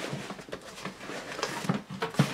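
Cardboard shipping box being handled and tugged at: a few light knocks and scrapes of cardboard.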